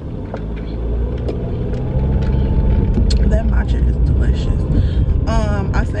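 Car engine and road noise heard from inside the cabin, a low rumble that builds over the first two seconds as the car pulls away and picks up speed, then holds steady. A brief wavering vocal sound comes near the end.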